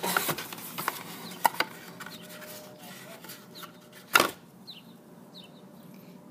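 Cardboard packaging rustling and scraping as a glass mason-jar candle with a metal lid is worked out of its cardboard divider insert, with a few light knocks in the first couple of seconds and a short, louder rustle about four seconds in.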